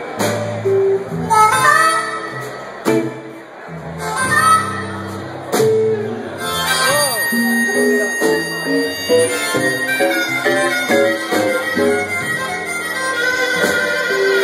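Amplified blues harmonica cupped against a microphone, playing a solo with bent, sliding notes over a backing band.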